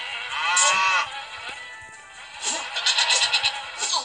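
Cartoon goat bleat sound effect: one wavering call of about a second near the start, over light background music. Later a fast, high rattling pattern plays for about a second.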